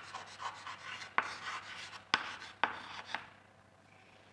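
Chalk writing on a blackboard: scratchy strokes broken by a few sharp taps as the chalk strikes the board, dying down near the end.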